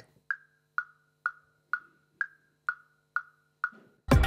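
A GarageBand woodblock metronome click track (Coffee Shop percussion kit in the Beat Sequencer) ticking steadily at about two clicks a second, eight clicks in all. A higher woodblock falls on the first beat of each bar and a lower woodblock on beats two, three and four.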